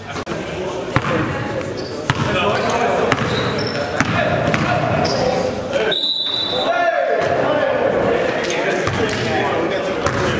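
A basketball bouncing on a gym floor, sharp thumps about once a second, with players' voices in an echoing gym.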